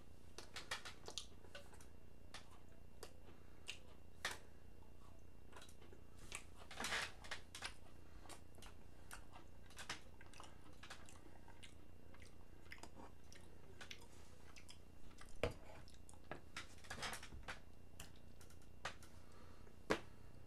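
A person chewing and crunching cookies close to the microphone, faint, with scattered crisp clicks and a few louder spells of crunching.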